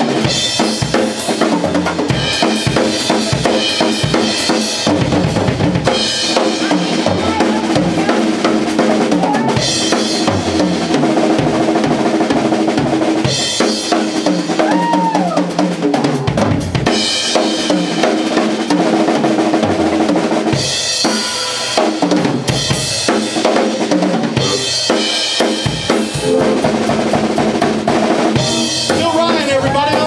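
Live drum kit played hard, with kick drum, snare hits and repeated cymbal crashes, and bass guitar notes underneath.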